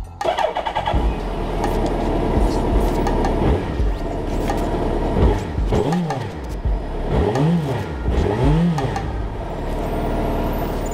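Motorcycle engine starting abruptly and running loudly, then revved three times in quick succession in the second half, its pitch rising and falling with each blip.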